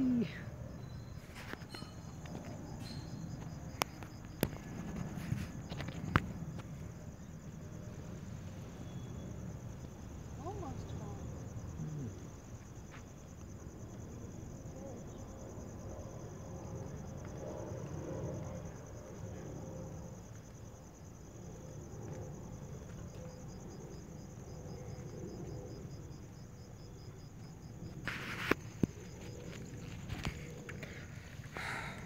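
Insects chirring in a steady, high, even trill over a low background rumble. A few sharp clicks come in the first six seconds, and a short cluster of knocks comes near the end.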